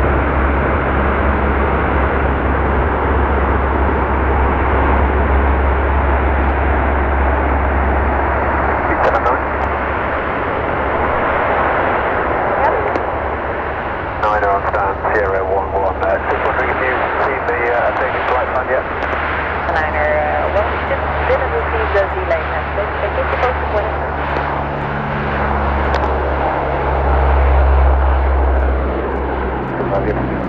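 C-130 Hercules' four Allison T56 turboprop engines running at take-off power through the take-off roll and lift-off, a dense steady propeller and engine drone with a deep low rumble that swells again near the end.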